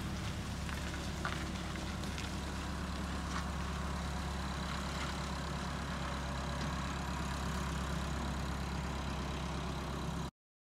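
Farm tractor engine running steadily at low revs while it tows a boat trailer, a low even hum.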